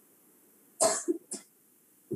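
A person coughing: one strong cough just under a second in, followed by a shorter, weaker one.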